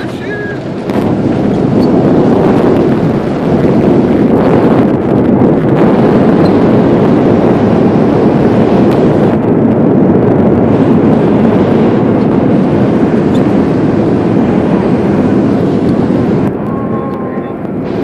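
Jet engines of a Boeing 737 heard from inside the cabin on the landing rollout, with the ground spoilers up. A loud, steady roar rises about a second in as the aircraft brakes on reverse thrust, then eases off near the end as it slows.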